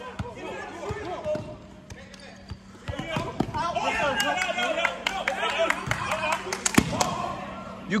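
Basketball bouncing on an indoor gym floor as it is dribbled, a few sharp bounces at uneven intervals, with players' voices calling out in the gym.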